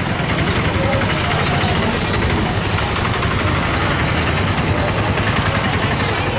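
A steady low rumble of a vehicle engine idling, with the voices of a crowd walking past underneath.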